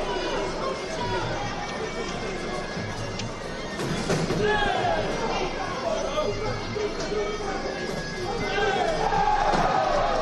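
Arena crowd noise and shouting with a wavering, reedy wind-instrument melody over it: the sarama music that accompanies a Muay Thai bout. A short laugh comes near the end.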